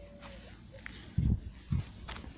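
A dog barking twice, about half a second apart; the two barks sound low and muffled.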